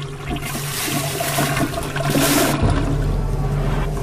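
A toilet flushing: a loud rush of water starts about half a second in and lasts about two seconds, then gives way to a lower rumble, over a low steady hum.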